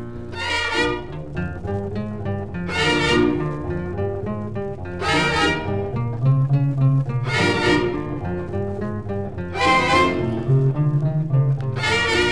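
Mariachi band playing an instrumental interlude between sung verses in a 1948 recording: a low bass line with strings and guitars, punctuated by loud accents about every two and a half seconds.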